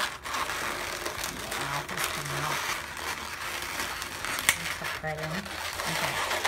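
Latex twisting balloons rubbing and squeaking under the fingers as small balloon eye bubbles are pushed and tucked under a bubble of a balloon dog, with a sharp click about four and a half seconds in.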